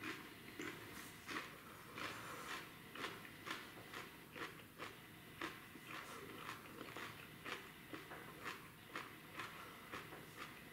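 A person chewing a fresh Warthog x Jigsaw chili pepper pod with steady crunchy bites, about two a second.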